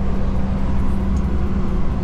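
Scania tipper truck's diesel engine and road noise heard from inside the cab while cruising on the open road: a steady low drone with a constant hum.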